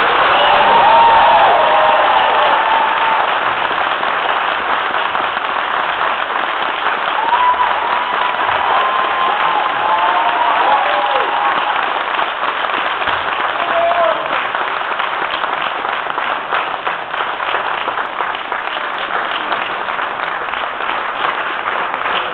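Auditorium audience applauding after a traditional Korean percussion (samulnori) performance, loudest at the start and slowly easing off. A few voices call out and whoop in the first seconds and again around the middle.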